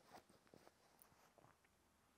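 Near silence, with a few faint soft rustles and ticks of quilted cotton fabric and wadding being handled during hand blanket-stitching.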